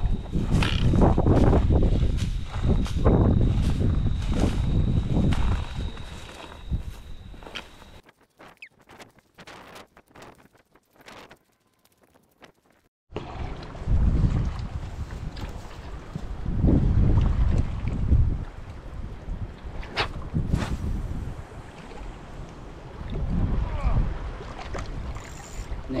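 Wind gusting on the microphone, dropping to near quiet for a few seconds about eight seconds in, then small waves lapping at a rocky shore under more gusts of wind.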